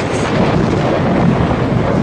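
A loud, steady rushing noise with a low rumble under it, without any pitched tone.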